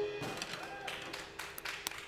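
A band's final chord dying away, then faint scattered taps and clicks.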